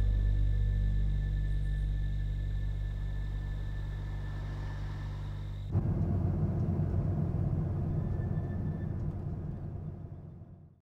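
Cinematic score under a title card: a deep, sustained low drone with held tones, slowly fading. About six seconds in it gives way abruptly to a rumbling low swell that fades out near the end.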